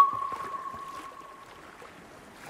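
A single sonar ping from a fishing boat's fish finder: one clear, high tone that strikes suddenly and fades away over about two seconds.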